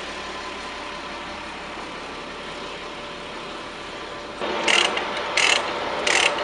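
A flatbed truck carrying a shipping container, running with a steady noise. About four and a half seconds in, a few short, sharp bursts of noise start.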